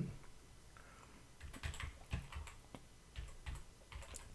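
Typing on a computer keyboard: a run of light, irregular key clicks beginning about a second and a half in.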